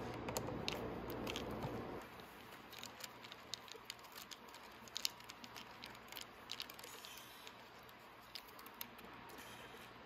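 Small scattered clicks and scrapes of a Phillips screwdriver working motorcycle battery terminal screws and the cable lugs being handled. A low steady hum runs underneath and stops about two seconds in.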